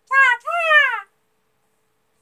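A woman imitating Charmander's cry in a high, squeaky voice: two quick calls that rise and fall in pitch, the second one longer, both within the first second.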